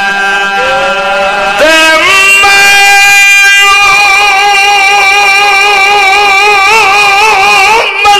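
A man's voice singing long held notes into a microphone in a chanted religious recitation, stepping up to a higher note about two seconds in and wavering in pitch near the end.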